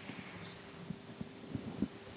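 A pause in speech: a faint steady hum and a few soft, irregular low thumps, typical of a handheld microphone being held and shifted in the hand.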